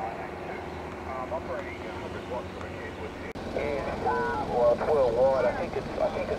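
Yaesu portable HF transceiver's speaker giving band hiss and faint, narrow-sounding single-sideband voices, with a steady tone through the first half.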